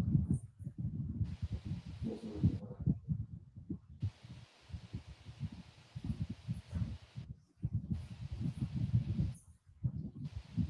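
Low, muffled, indistinct voice sounds and soft thumps from a video being played back, with a faint hiss that cuts in and out several times.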